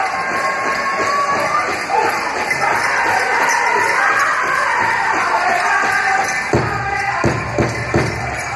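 Powwow drum group singing over the beat of the big drum; about six and a half seconds in, the drum beats come in much harder and louder.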